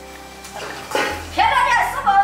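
People's voices talking and exclaiming over background music. A loud voice rises and falls in pitch in the second half.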